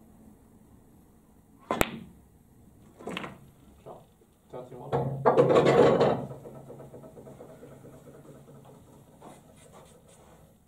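Snooker cue tip striking the cue ball with one sharp click, followed about a second and a half later by a softer knock of the balls and the potted red, then a small tap. About five seconds in comes the loudest sound, a longer, muffled burst lasting about a second.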